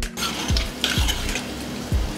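Garlic cloves and chana dal sizzling in hot oil, frying loudest over the first second and a half, over background music with a steady low beat.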